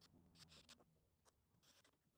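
Near silence: room tone with a few very faint scratchy handling noises.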